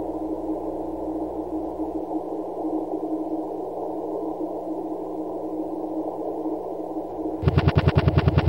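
A steady, muffled low ambient drone with a constant hum, from the film's soundtrack, under a tense dark scene. Near the end, a loud rapid stutter of about a dozen sharp pulses in roughly a second cuts in.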